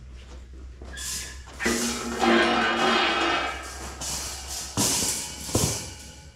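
A dog's long drawn-out whine lasting about three seconds, followed near the end by the metallic clatter of wire exercise-pen panels being set down.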